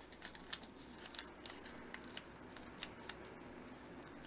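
A sheet of origami paper being folded and creased by hand: soft rustles and crisp crackles of the paper. The sharpest crackle comes about half a second in and another near three seconds.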